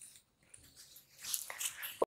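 Soft rustling of a sheer saree's fabric as it is lifted and shifted by hand, starting about a second in.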